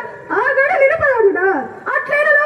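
A voice singing a Telugu drama padyam (verse), amplified through a stage microphone and speakers. It is a single melismatic phrase with notes that bend and waver, starting shortly after the beginning and tailing off near the end.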